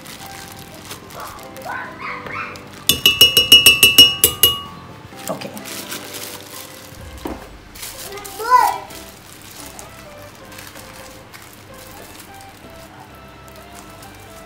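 A quick run of about ten sharp, ringing clinks on a glass blender jar, lasting about a second and a half, as candied mixed fruit is knocked into it from a plastic bag with a spoon.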